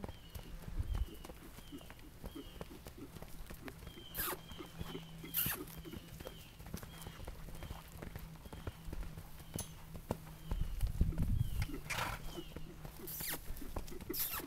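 Hoofbeats of a Gypsy horse cantering loose on sand, a string of soft irregular thuds, with a few short breathy rushes of noise now and then.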